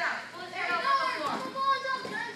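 Children's voices calling out and talking.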